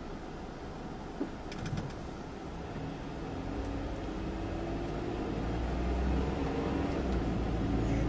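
Car engine and road noise heard from inside the cabin as the car pulls away from a stop. The engine note rises and the sound grows steadily louder over the second half. A few brief clicks come about a second and a half in.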